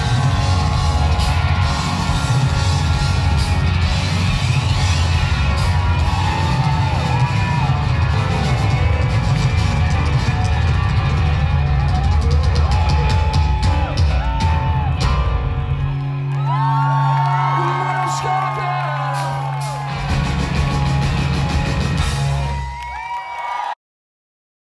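Live pop-rock band (electric guitars, bass, keyboards, drums) playing loudly to the close of a song, with audience whoops and yells over it. From about two-thirds of the way in the drumming stops and a low note is held while the crowd keeps whooping, and the sound cuts off suddenly just before the end.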